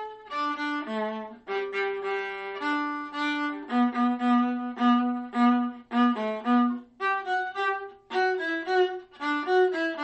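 Solo viola bowing the viola part of an ensemble piece alone, a single melodic line of short, separate notes in quick groups broken by brief gaps.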